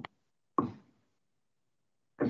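A single short knock about half a second in, fading quickly, with the tail of a spoken word at the very start.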